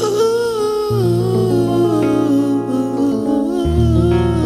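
A wordless, humming vocal line that slides and wavers in pitch, entering at the start over sustained Rhodes electric piano chords in a slow soul/R&B jam.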